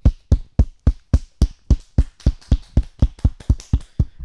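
Steady percussive beats like a slow drumroll, about four strikes a second, each with a deep thump, building up to an announcement.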